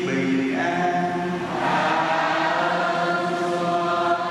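Voices singing a slow liturgical chant in long held notes, moving to a new pitch about a second and a half in.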